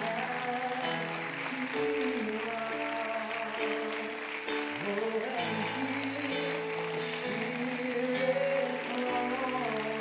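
Live church worship band playing slow, held chords, with a congregation applauding underneath.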